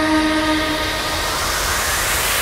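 Psytrance breakdown: a chord of held synth tones fades out in the first second, leaving a steady noise sweep that builds toward the next drop.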